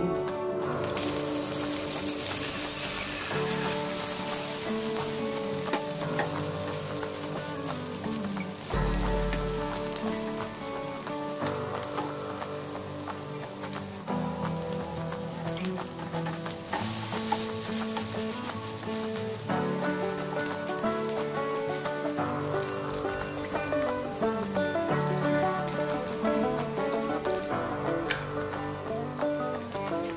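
A Maggi noodle and egg mixture sizzling as it fries in hot oil in a nonstick frying pan. The sizzle starts about a second in, once the mixture is poured in, and carries on under background music.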